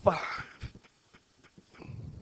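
A breathy tail off the end of a spoken word, then a few faint light taps of a pen stylus writing digital ink, with a low rumble near the end.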